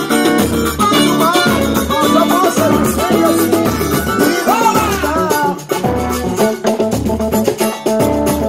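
Live samba band playing a steady groove: a surdo bass drum struck with a mallet pulses under a hand-played drum and plucked strings.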